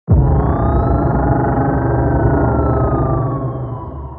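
Loud synthesizer drone in a film-trailer score, starting suddenly, with a high tone gliding slowly up and then back down over it; it begins to fade near the end.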